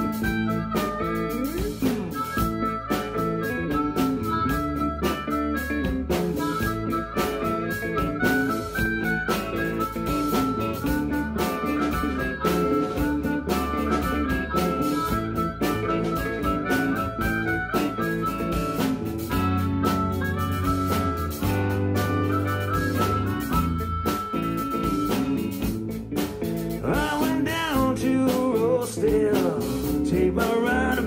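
Live blues-rock band playing an instrumental break: electric guitars, bass guitar and drums, with harmonica, in a steady shuffle with long held lead notes.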